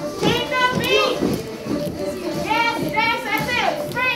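A group of children calling out in high voices, in two bursts, over the busy noise of children jumping and moving about a room, with music faintly underneath.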